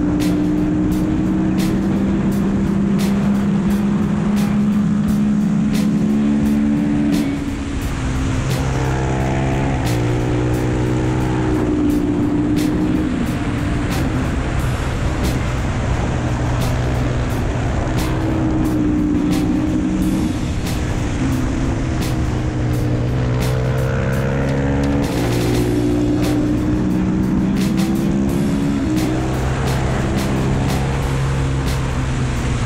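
Single-cylinder Husqvarna supermoto engine at racing speed, heard from an onboard camera: the revs hold high, drop about seven seconds in and climb again through the gears, and rise again near the end. Wind noise runs underneath.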